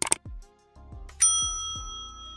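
Sound effects of a YouTube subscribe-button animation. A sharp click comes right at the start, then a few short low falling swoops, and about a second in a loud bell-like ding rings on.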